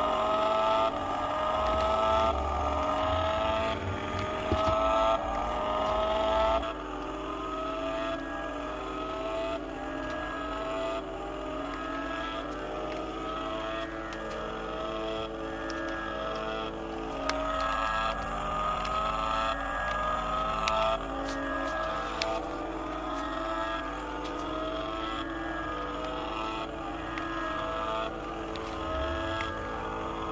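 Toy remote-control car's electronic engine sound effect: a synthetic revving whine that rises and repeats about once a second, loudest at first and fainter later, coming back briefly past the middle.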